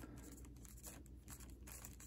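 Faint scratching of a felt-tip marker writing on a plastic zip-top bag, with light crinkling of the bag.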